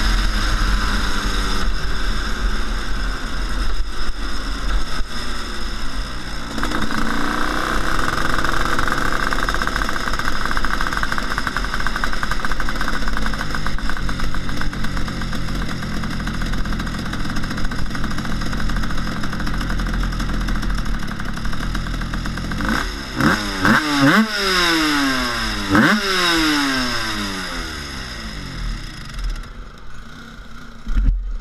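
Rotax 256 twin-cylinder 250cc two-stroke superkart engine running under way, its pitch rising and falling. In the last third there are several quick revs that fall away sharply, and the engine sound dies down near the end.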